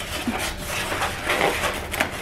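White foam packing blocks being pulled against the inside of a cardboard shipping box: cardboard and foam scraping and rustling in uneven spurts, with a few faint knocks.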